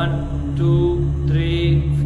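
Background devotional music: a voice chanting a mantra over a steady low drone.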